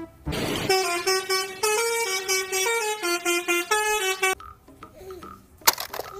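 An electronic jingle: a run of short, buzzy beeping notes that step up and down in pitch like a little tune, lasting about four seconds. A single sharp click comes near the end.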